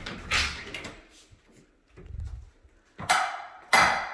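Handling noise and a door being worked: a rustle at the start, a low thump about two seconds in, then two sharp knocks near the end, under a second apart, ringing briefly in a small hard-walled room.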